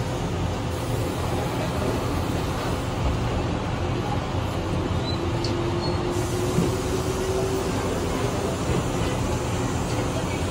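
Interior of a Sydney Trains electric suburban train pulling away from a station: a steady running rumble, with a faint motor whine rising slowly in pitch a few seconds in as the train gathers speed.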